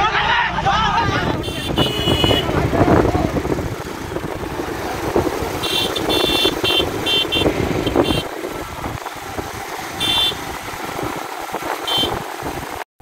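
A motorcycle runs and moves off amid crowd voices. Short horn toots sound in several groups: about two seconds in, a cluster around the middle, and again near the end.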